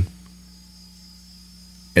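Faint, steady low mains hum.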